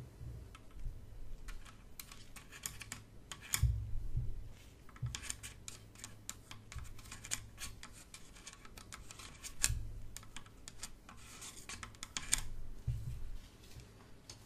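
Gloved hands working close to the microphone: scattered sharp clicks, scratches and rubbing, with a short patch of rustling near the end and a few soft low thumps.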